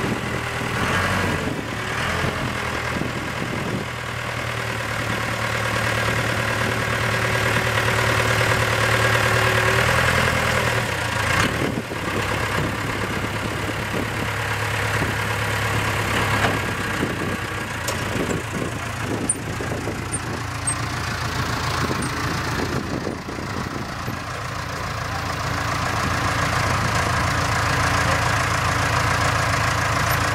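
The Case 4-390 3.9 L four-cylinder diesel engine of a 1989 Case 580K backhoe running at a steady low speed while the loader arms are worked and the bucket comes down. A steady whine rides over the engine for the first ten seconds or so, and a few brief knocks come in the middle.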